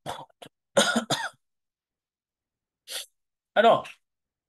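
A person coughing twice in quick succession about a second in, two short, loud coughs.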